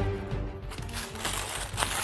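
A paper sandwich wrapper being crinkled and unfolded by hand, a continuous papery crackle, over background music.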